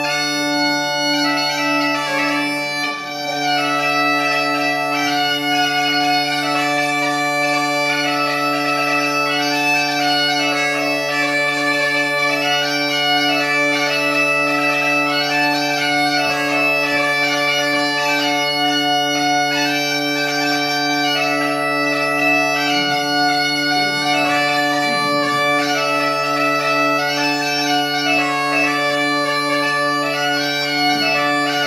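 Galician bagpipe (gaita galega) playing a tune on the chanter over a steady low drone, its drone fitted with the multitone bordón that lets it be set to different keys. The drone sounds throughout, and the melody comes in about a second in.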